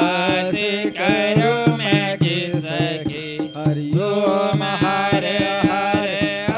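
A Hindu devotional aarti hymn sung to instrumental accompaniment, with a regular percussive beat under a gliding vocal melody.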